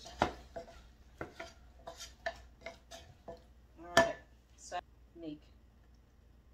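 Wooden spoon knocking and scraping against a nonstick saucepan while stirring cooked apple pie filling: a run of irregular clicks, with the loudest knock about four seconds in.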